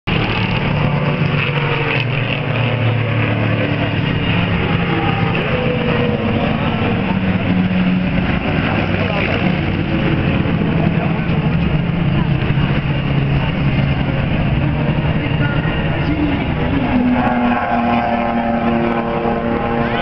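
Engines of a group of classic cars running on a racetrack circuit, several engine notes overlapping and shifting in pitch, with more engines joining in the last few seconds as the pack comes closer.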